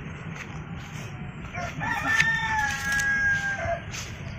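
A rooster crowing once, about halfway in: one long call of about two seconds, held level in pitch and dipping just before it ends.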